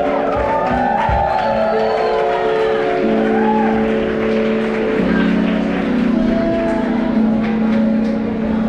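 Live funk/R&B band playing: long held chords that change every second or two, with a couple of drum hits in the first second or so.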